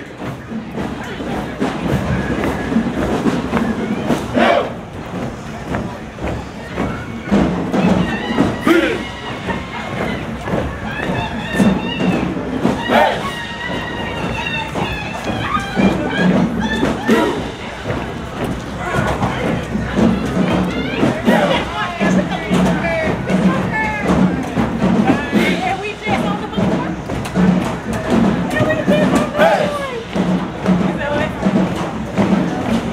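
Marching band members chanting and singing together as they walk in, with crowd voices around them. About halfway through, a steady low thumping beat comes in at about one beat a second.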